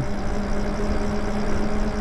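Lyric Graffiti electric moped-style bike riding along a paved street: wind and tyre rumble on the microphone, with a steady hum from its motor.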